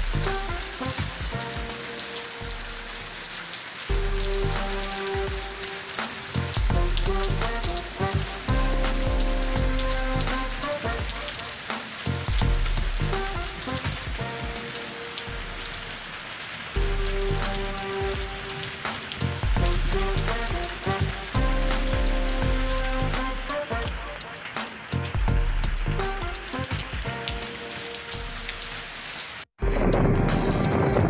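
Steady rain hissing down on a wet street, under a low, sustained background music bed whose chords change every few seconds. The sound cuts out briefly just before the end.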